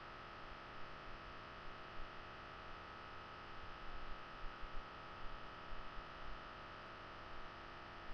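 Steady hiss from a webcam microphone with a constant thin electronic whine, broken only by a few faint low bumps.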